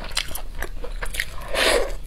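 Close-miked chewing and biting of chicken meat: many short wet mouth clicks and smacks, with a louder, longer rush of noise near the end.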